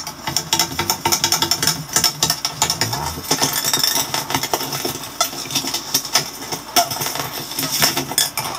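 A homemade electric string instrument, wires stretched between nails on a wooden board, being strummed and plucked by hand, giving a dense, uneven run of rapid metallic clicks and rattles.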